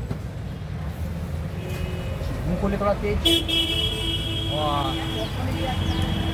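A vehicle horn sounds about three seconds in and is held as one steady tone until the end, over the low rumble of street traffic.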